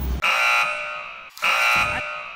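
An electronic buzzer tone sounds twice, each time starting abruptly and fading away over about a second, with a hard cut between them: an edited-in 'wrong answer' style buzzer sound effect, here marking stores with no cauliflower.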